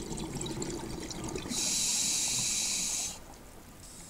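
A scuba diver breathing underwater: bubbly, gurgling exhaled air at first, then a steady hiss of inhaling through the regulator for about a second and a half, stopping a little after the middle.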